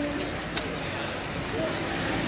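A bird cooing faintly over steady outdoor background noise.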